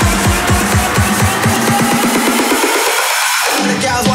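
Background electronic dance music with a steady drum beat. From about halfway through, the bass drops out in a rising filter sweep, and the full beat comes back at the end.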